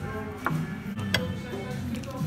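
Background music with two sharp clinks of a metal fork against a ceramic plate, about half a second and just over a second in, and a short laugh.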